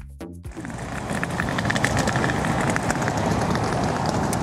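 Background music with a steady beat that cuts off about half a second in, giving way to loud outdoor city ambience: a steady wash of traffic and street noise with faint scattered clicks.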